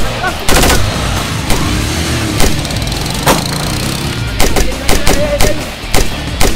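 Rifle gunfire sound effects in a staged shootout: a short burst about half a second in, single shots about once a second, then a quick string of shots near the end, over background music.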